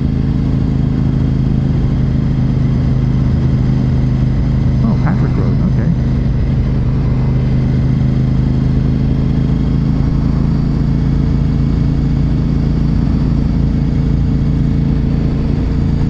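Honda RC51's 1000 cc V-twin engine running steadily at a constant cruising speed, with no revving or gear changes.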